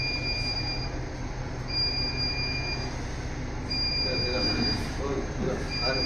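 High electronic beep, each lasting about a second and repeating about every two seconds, over a steady low hum.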